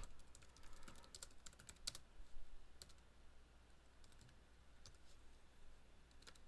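Faint typing on a computer keyboard: a quick run of keystrokes in the first three seconds, then a few scattered taps.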